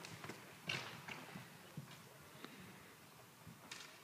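Faint hoofbeats of horses trotting on the sand footing of an indoor riding arena: a few soft, irregular knocks.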